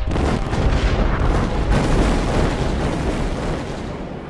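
Cannon fire and explosions from a sea battle: a dense, continuous rumble of blasts that slowly dies away near the end.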